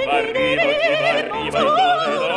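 Soprano and baritone singing an Italian opera duet with piano accompaniment, the voices moving in quick, wavering ornamented runs.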